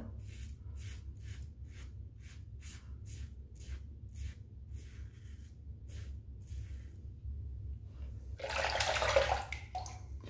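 Double-edge safety razor scraping through stubble in short, even strokes, about two or three a second. Near the end comes a louder rush of running water lasting about a second.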